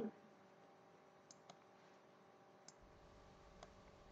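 A few faint computer mouse clicks over near-silent room tone, spaced irregularly, with a faint low hum coming in near the end.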